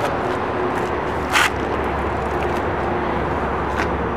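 A man climbing into a backless car seat: a brief scrape about a second and a half in and a faint click near the end, over a steady low outdoor rumble.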